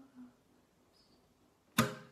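A pause in an acoustic guitar song: the last held note fades out, then a single sharp acoustic guitar strum rings out near the end.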